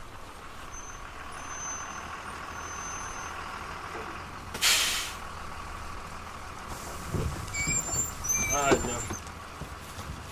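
Street traffic ambience: a steady rumble of traffic with a short, loud hiss of air about halfway through and brief voices near the end.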